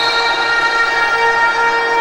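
A horn sounding one long steady note for about two seconds, with several overtones above it.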